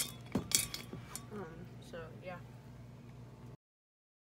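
A sharp plastic click as the cap comes off a can of Atmosphere Aerosol haze spray, followed by a few lighter clicks and knocks within the first second. The sound then cuts off abruptly shortly before the end.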